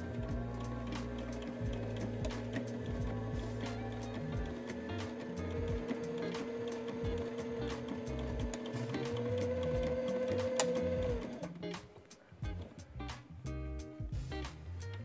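Sailrite Ultrafeed LSZ-1 walking-foot sewing machine stitching through two layers of canvas: a steady run of rapid needle strokes with a motor hum, stopping about eleven seconds in. Background music plays underneath.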